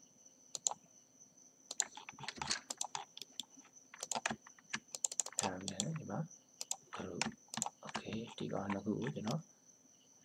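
Quick, sharp clicks of a computer mouse and keyboard keys in irregular runs, densest in the first half; a voice speaks in short bursts in the second half.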